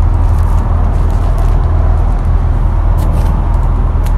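A loud, steady low rumble with a few faint ticks over it.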